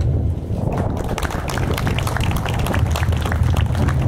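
Audience applauding, the clapping thickening over the first second, over a low rumble of wind on the microphone.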